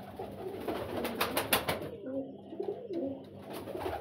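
Domestic pigeons cooing, low and rising and falling, with a few sharp clicks about a second in.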